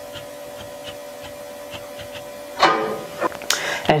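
A steady low electrical hum with a few faint ticks. About two and a half seconds in comes a short, louder burst of noise, and a brief hiss follows just before speech resumes.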